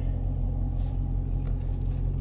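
Car engine idling steadily, a low rumble heard from inside the closed cabin.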